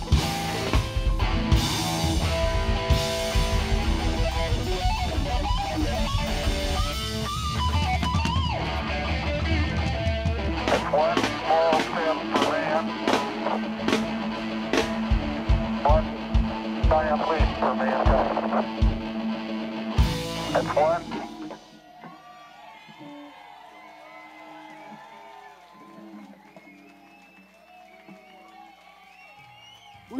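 Live rock band (electric guitar, electric bass and drum kit) playing out the end of a song: heavy drums and bass at first, then scattered drum hits and guitar over a held bass note, closing on a final loud hit about twenty seconds in. After that the music stops and only faint voices are left.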